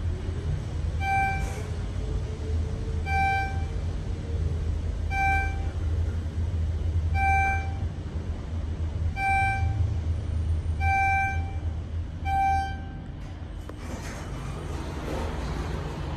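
Schindler 400A elevator car moving between floors: a steady low hum of the ride, with a single-tone electronic beep sounding seven times, about every two seconds, then stopping near the end.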